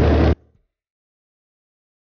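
Cabin noise of an electric-converted VW Samba bus on the move, a low hum over road and wind noise, which cuts off abruptly about a third of a second in, leaving dead silence.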